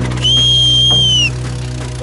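One loud, long whistle held at a steady high pitch for about a second, dipping slightly as it ends, over a steady low hum.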